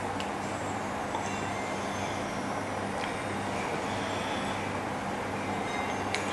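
Steady room background: a low electrical or air-conditioning hum under an even hiss, with a few faint ticks.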